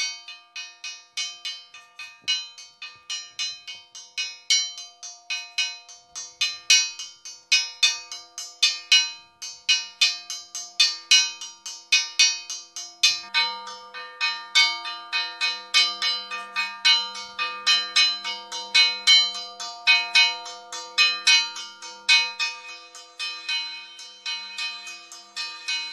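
Church bells rung in quick repeated strikes, about two to three a second, several bells of different pitch, each ringing on between strokes. About halfway through, a deeper bell joins the pattern.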